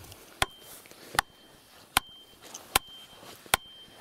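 Axe head striking the top of a wooden stake, driving it into the pond bed: five sharp, evenly spaced blows about one every 0.8 s, most followed by a short high ring.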